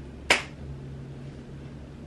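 One short, sharp hand sound, a snap or clap of the hands in a handshake routine, about a third of a second in, followed by a faint low steady hum.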